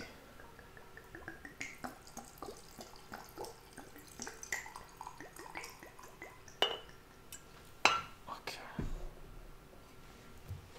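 Vodka glugging and splashing as it is poured from a glass bottle into a glass jar of pomegranate seeds, a quick run of small drip-like sounds. Two louder sharp sounds stand out about two-thirds of the way through.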